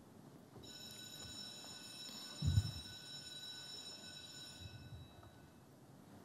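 Faint steady electronic tone of a legislative chamber's electronic voting system, several high pitches held together for about four seconds and then cut off, signalling that the machine is unlocked for voting. A brief low thump or murmur sounds about halfway through.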